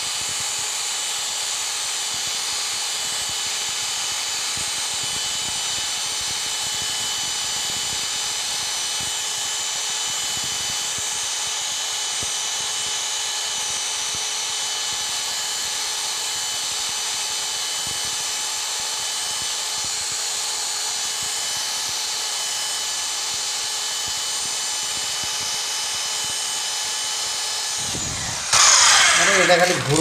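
Cordless drill running at a steady speed, spinning an abrasive rod against the inner face of a ceiling fan's steel rotor ring: an even whine over a grinding hiss. It stops shortly before the end, and a man's voice follows.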